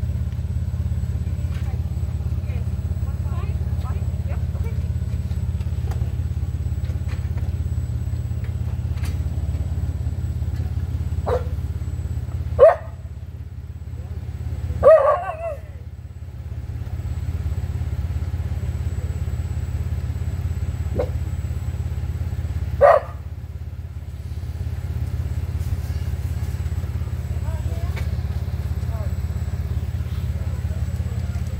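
Steady low rumble of an idling vehicle engine, broken by three short, loud, sharp sounds partway through.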